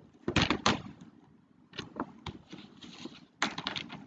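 Irregular knocks and clicks: a loud cluster of rapid knocks just after the start, a few single clicks in the middle, and another rapid cluster near the end.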